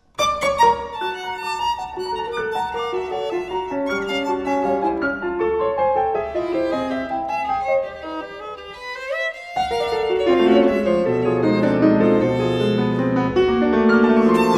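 Violin and grand piano playing a contemporary classical duo. After a brief break the music comes in sharply with a run of quick notes. About nine seconds in a line glides upward, then the piano's low register enters and the music grows louder.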